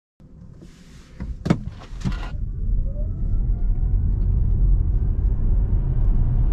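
Hyundai Ioniq 5 accelerating from a stop in Eco mode, heard from inside the cabin: low road and tyre rumble builds with speed, with a faint electric whine rising steadily in pitch. A few knocks come in the first two seconds.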